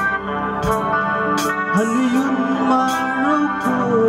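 Live band music in a slow tempo: sustained guitar and keyboard chords with cymbal strokes, and a male voice singing a held, gliding melody from a little before halfway.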